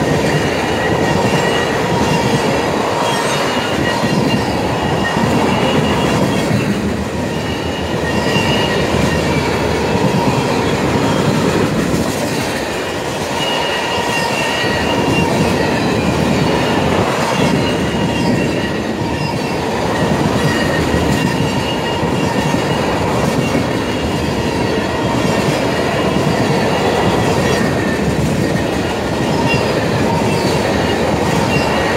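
Freight train tank cars rolling past at speed: a loud, steady rumble of steel wheels on rail, with high ringing tones from the wheels that come and go throughout.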